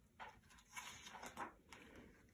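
Near silence: room tone with a few faint, short soft noises.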